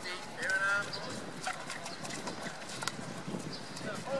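Field hockey sticks striking balls on artificial turf: a scattering of sharp cracks and knocks from the passing drill, with a player's shout about half a second in.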